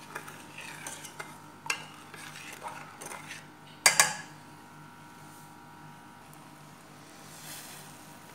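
Metal ladle stirring a thin liquid in a stainless steel pot, knocking and scraping against the pot's sides in a few sharp clinks. The loudest clink, which rings briefly, comes about four seconds in; the rest is quiet.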